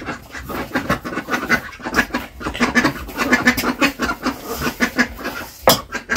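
Roti dough being kneaded by hand in a steel bowl: a dense run of soft squelching presses and slaps, with a sharp knock of the bowl near the end.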